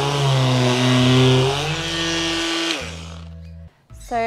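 A small Ryobi battery-powered hand sander runs on a varnished timber table top, sanding off the old finish, and stops about three-quarters of the way through. Background music with sustained, stepping notes plays over it and fades out just before the end.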